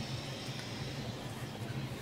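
Electrolux 13 kg top-loading washing machine running on a load of dark clothes: a faint, steady low hum with an even hiss.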